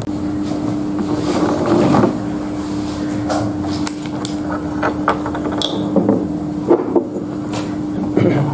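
Bottles, a cinnamon stick and a tea sachet being handled and set down on a wooden tabletop: a few soft rustles and several short knocks, mostly in the second half, over a steady low hum.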